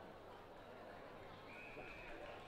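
Faint open-ground ambience with distant shouts from the footballers on the field, and one high drawn-out call starting about a second and a half in.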